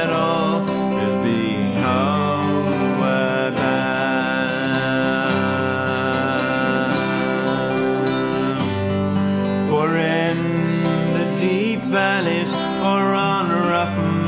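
Acoustic guitar strummed with digital piano accompaniment, playing a folk song's passage between sung lines.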